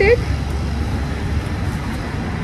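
Steady road-traffic noise, heaviest in the low range.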